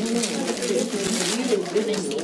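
Indistinct chatter of several people talking at once, with no single voice clear enough to make out words.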